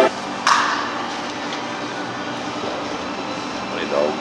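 Workshop room noise: a single sharp knock about half a second in, then a steady background of shop noise with indistinct voices.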